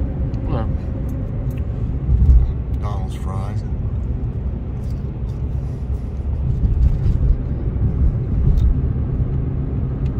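Steady low rumble of a car's road and engine noise heard inside the cabin while driving, with a couple of brief bits of voice.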